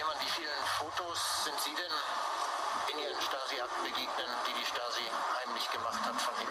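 Speech from a played-back recording, heard through a video call and sounding thin, like a radio, with a low steady hum underneath.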